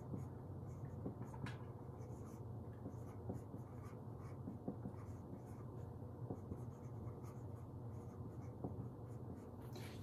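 Marker pen writing on a dry-erase whiteboard: faint short strokes scattered throughout, over a steady low hum.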